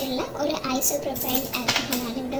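Light clinks and knocks of a plastic bottle and plastic measuring utensils being handled on a tabletop, a few sharp clicks with a cluster about three-quarters of the way through.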